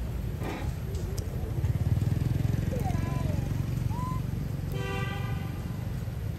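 Low engine rumble of a motor vehicle, swelling about one and a half seconds in. A short horn toot sounds near the end, and a few faint high chirps come before it.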